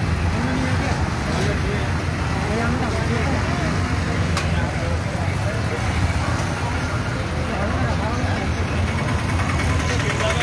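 Road traffic at a busy junction: motorcycle engines running close by with a steady low rumble and people talking in the background. Near the end an auto-rickshaw's engine runs close by with a fast, even pulse.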